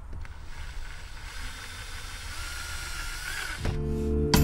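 Cordless drill running for about three seconds, its bit drilling into the plastic dash trim panel, with a steady high whine. Near the end, strummed acoustic guitar music starts, louder.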